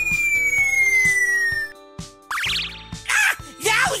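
Background music with added cartoon sound effects: a long falling whistle in the first second and a half, a short rising sweep about two seconds in, and crackling near the end.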